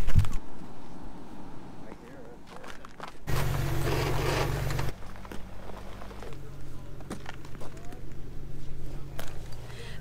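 A vehicle engine idling steadily in the background, its low hum dropping out and coming back a few times, with scattered footsteps and knocks on frozen, snowy ground.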